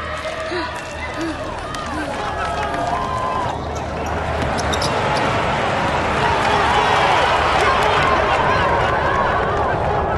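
Basketball game crowd: many overlapping voices and shouts, with a few sharp knocks early on, and the crowd noise swelling louder from about halfway through.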